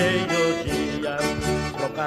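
Instrumental passage of a gaúcho bugio song: an accordion carries the melody over backing instruments, with a steady beat.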